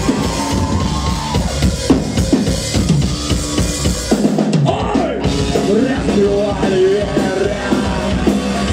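A rock band playing live in a club, heard from within the crowd: a full drum kit with bass drum and snare under loud guitars, with melodic lines that bend in pitch. The low end drops out briefly about four and a half seconds in, then the band comes back in.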